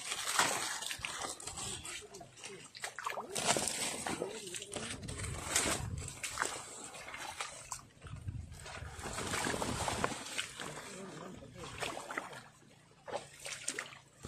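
Someone wading through shallow, muddy water, with irregular splashes and sloshes from each step.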